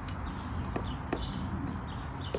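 Three sharp plastic clicks as a spray nozzle is screwed back onto the end of a garden hose, over a steady low rumble.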